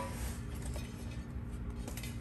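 Faint rustling and handling of fabric and packing material in a cardboard box as a heavy pot lid is lifted out, with a small tick near the end.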